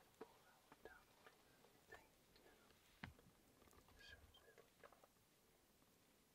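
Near silence: faint whispering and a few small scattered clicks and rustles.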